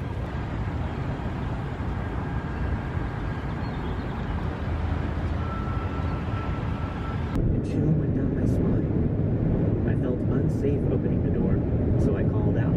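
Steady outdoor background hiss, then an abrupt cut about seven seconds in to the low rumble of road and tyre noise inside a car driving at highway speed.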